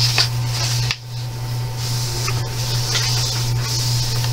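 A paper page of a thin coloring book being turned with a rustle, then a hand rubbing flat across the paper with soft swishes.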